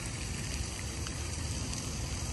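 Steady outdoor noise: wind buffeting the microphone with an uneven low rumble, over an even hiss.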